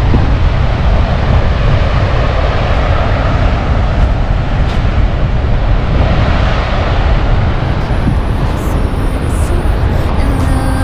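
Loud steady rush of water released from the dam outlet below Lake Argyle, a churning torrent pouring into the river, with a strong low rumble under it.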